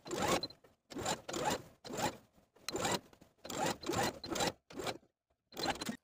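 Domestic sewing machine stitching in about seven short bursts, each about half a second long with brief pauses between, as it understitches a neckband seam.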